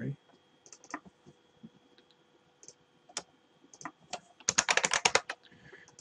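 Typing on a computer keyboard. There are scattered single keystrokes at first, then a quick run of about a dozen keys a little before the end.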